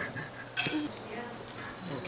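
A steady, high-pitched chorus of night insects such as crickets, with a brief laugh at the start.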